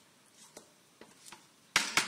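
Wooden spoon stirring thick tomato stew in a metal pot: a few faint knocks, then a short, loud scrape near the end.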